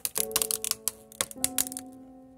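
Rapid, irregular sharp cracks and crackles of a geopropolis seal breaking as the lid of a wooden stingless-bee hive box is pried off, over background music with held notes.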